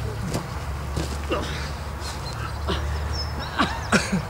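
Two people grunting and scuffling as they wrestle, short falling grunts about once a second, with sharper knocks and a louder thud near the end as they go down to the ground. Played through the speakers of a screening room, over a steady low hum.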